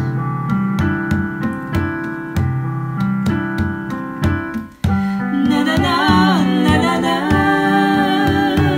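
Piano playing repeated chords in a steady rhythm with hand-drum beats underneath, with no voice. The music drops out for a moment just before five seconds in, then a singing voice comes back in over the piano and drum.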